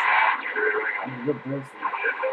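CB radio speaker hissing with static, a weak distant station's voice faint and garbled underneath. It is the sign of a fading skip signal barely above the noise, with the signal meter reading low.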